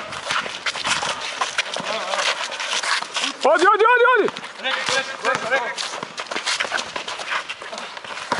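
Outdoor pickup basketball: sneakers scuffing and slapping on an asphalt court and a ball bouncing, heard as a string of short knocks. A little past halfway comes one long, loud shout that rises and falls in pitch, followed by shorter calls.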